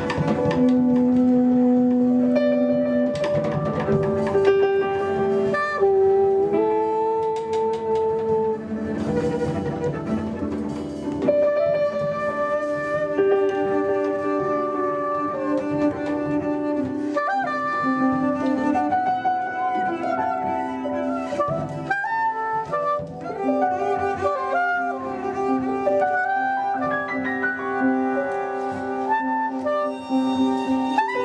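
Live jazz: a double bass played with the bow and an alto saxophone holding long notes, with drums and cymbals struck underneath.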